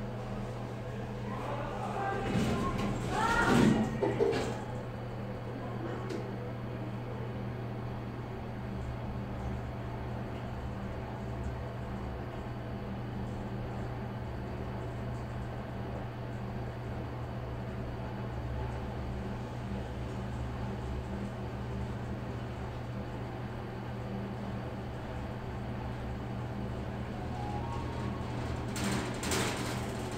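1992 Dongyang (Toshiba-partnered) CL40 traction elevator climbing from the ground floor. A short louder sound comes about two to four seconds in, around the doors closing, then a steady low hum runs through the ride, with another brief rise in sound near the end as the car nears the top floor.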